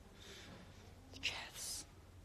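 A woman whispering two short phrases under her breath, without voice.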